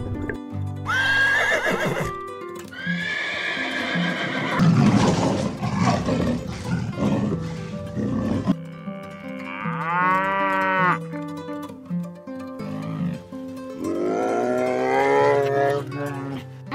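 Background music with a series of animal calls over it: short high cries near the start, a longer call a few seconds in, one long arching call about ten seconds in, and a rising call near the end.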